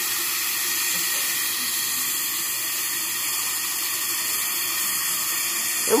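Dental air-water syringe blowing a steady hiss of air, drying the prepared tooth ahead of the slow-speed handpiece.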